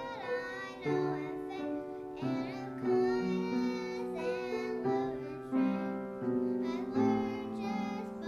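Young girls singing a song together into a microphone, with piano accompaniment.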